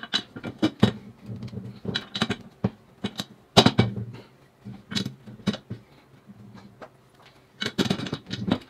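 Casters being pushed into the sockets of a plastic five-star chair base and the base shifted on a wooden bench: a run of irregular sharp plastic clicks and knocks.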